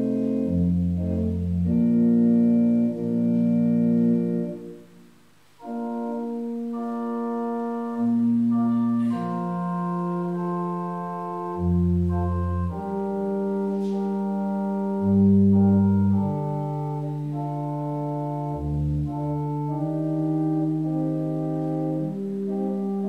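Organ playing slow, sustained chords over a moving bass line, with a brief pause about five seconds in.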